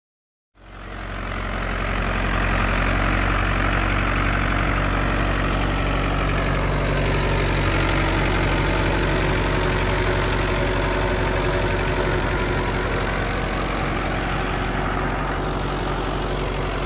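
Mahindra Yuvo 585 tractor's four-cylinder diesel engine running steadily under load while driving an 8 ft Maschio Virat rotavator that churns through the soil with its lever fully down, at full working depth. The sound comes in about half a second in and holds an even level.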